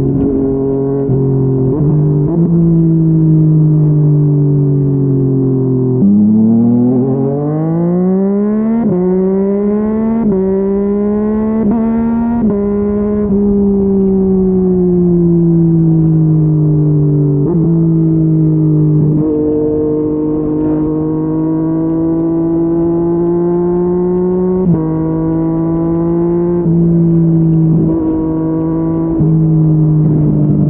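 Yamaha MT-09's inline-three engine through a Yoshimura R55 slip-on exhaust, running at steady cruising revs. About six seconds in it revs hard through several quick upshifts, each a brief dip in pitch, then settles back to a steady cruise with a few more gear changes.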